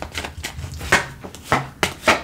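Tarot cards being drawn from a deck and laid down on a cloth-covered table: a few short, sharp card flicks and slaps, one after another.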